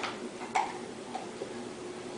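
A puppy chewing in the background, giving a few faint, irregular crunching clicks.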